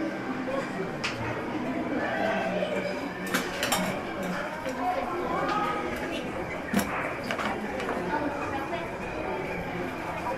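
Kitchen utensils clinking and knocking now and then, the sharpest clink about two-thirds of the way through, over low background voices.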